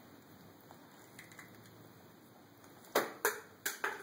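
Four sharp slaps in quick succession near the end, a toddler's cream-cheese-covered hands hitting a plastic high-chair tray, after a few seconds of quiet room tone.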